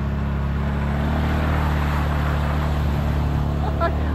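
Side-by-side UTV's engine running steadily at low speed, with a steady rush of tyre noise on a wet dirt road.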